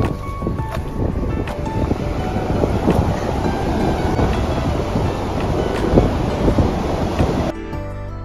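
Background music over a steady rush of water, river water spilling over a low dam, mixed with wind on the microphone. Near the end the rush cuts off suddenly, leaving only the music.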